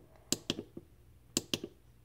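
Small push button on a plastic battery box of LED string lights clicking as it is pressed: two pairs of sharp clicks about a second apart, stepping the lights through their modes.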